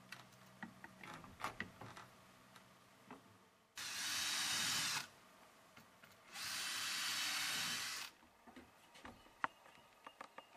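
A power drill runs in two bursts a few seconds in, one about a second long and the next nearly two seconds, as screws are driven into the timber of the window frame. Light knocks and clicks of handwork come before them.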